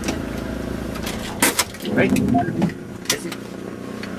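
Car running along a road, its engine and road noise heard as a steady low hum from inside the cabin. A few short sharp noises and a brief spoken word sit over it.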